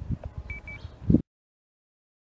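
Two short high beeps among a few dull low thumps, then the sound cuts out completely, dropping to dead silence, a little over a second in.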